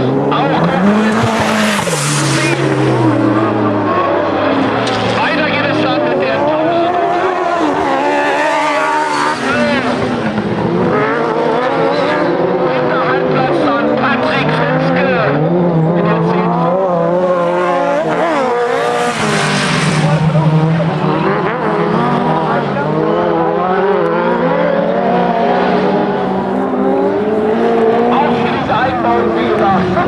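Autocross race cars' engines running hard on a dirt track, several overlapping engine notes rising and falling continuously as the drivers rev, shift and brake through the corners.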